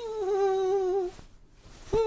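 A man humming a tune with two held notes, each about a second long and slightly wavering. The second note starts near the end.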